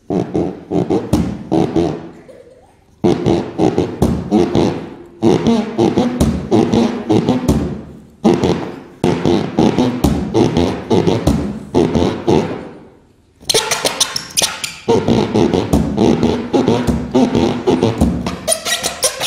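Air let out through the stretched neck of a rubber balloon, buzzing and rasping in rapid pulses like a raspberry, played as rhythmic phrases of a few seconds with short breaks between them.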